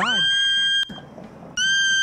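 A woman screaming: two long, high-pitched shrieks each held on one steady pitch, the first cutting off after under a second and the second starting about one and a half seconds in.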